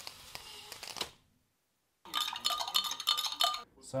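Light clinking of tableware, a metal spoon or utensil against crockery, about a second and a half of rapid clicks with a ringing tone, after a brief stretch of hiss and a short dead-silent gap.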